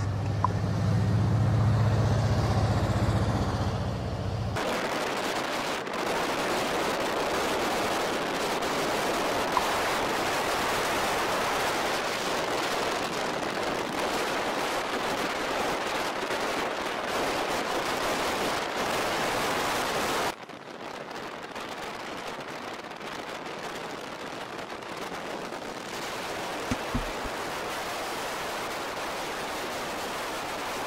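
Vehicle convoy on a road: a low engine drone for the first few seconds, then an even rush of engine, tyre and wind noise. The noise drops abruptly in level about twenty seconds in.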